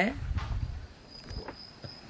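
A low rumble in the first half, then a faint, steady, high-pitched insect tone that comes in about halfway and holds.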